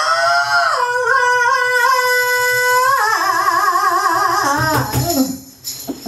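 Female blues vocalist holding one long sung note, breaking into a wide vibrato about three seconds in and falling away about five seconds in: the final note of the song.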